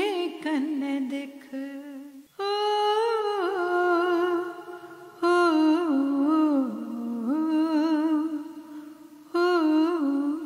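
A voice humming a slow, wavering melody in long held phrases, with slides between notes and short breaths between phrases about two and a half, five and nine and a half seconds in.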